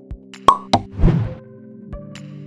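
Animated-title sound effects over background music: a sharp pop about half a second in, a second pop just after, then a brief rush of noise.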